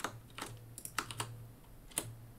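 Computer keyboard keys being pressed: a handful of separate clicks spread a few tenths of a second apart, over a faint low hum.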